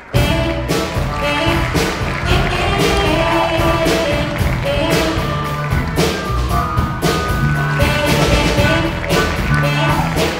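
Rock band playing: a Korg keyboard, drum kit and electric bass with a steady beat, starting suddenly right at the outset.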